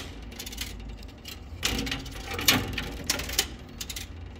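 Coins clinking inside a coin pusher arcade machine: a few sharp metallic clicks, most in the second half, over a low steady hum.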